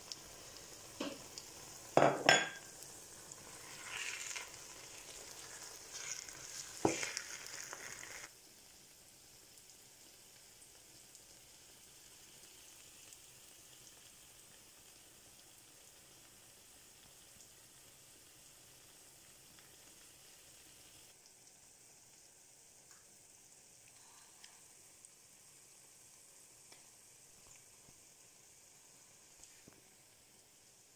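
Spinach and garden egg sauce sizzling in a frying pan as onions and spring onions are tipped in, with several sharp knocks of plate or utensil against the pan over the first eight seconds. After that only a faint steady hiss remains.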